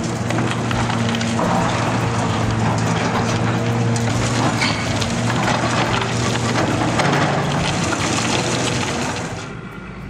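High-reach demolition excavator breaking down a concrete building: continuous cracking, crunching and falling of masonry and rubble over the steady running of the machine's diesel engine. It fades out near the end.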